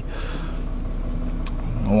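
Steady low hum of a vehicle running, heard from inside its cab, with a single click about one and a half seconds in.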